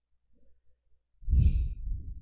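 A man's heavy sigh, a loud breath out blowing onto a close microphone, starting a little past a second in and lasting about a second.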